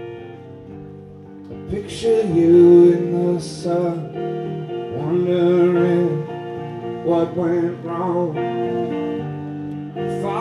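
Live rock band with electric guitar and bass playing, held chords at first, then swelling louder about two seconds in.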